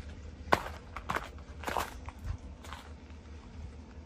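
Footsteps crunching on a dirt and gravel yard, about four steps at a walking pace, over a low steady rumble.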